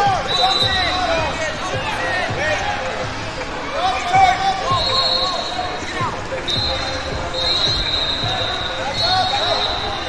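Busy wrestling-tournament hall: coaches and spectators shouting across the gym, with a high whistle tone sounding several times and scattered thumps from bodies and feet on the mats.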